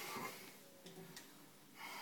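A faint, sharp breath through the nose, followed by quiet room tone with a small click about a second in.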